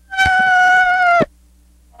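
A high-pitched squeal held for about a second, steady and then dropping a little in pitch just before it cuts off, with a soft knock near its start.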